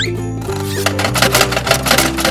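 Cheerful background music with steady notes, joined about a second in by a fast rattling of roughly ten clicks a second: a cartoon sound effect of a gumball machine working to dispense a gumball.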